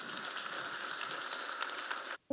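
Audience applauding, a steady spatter of many hands clapping at moderate level.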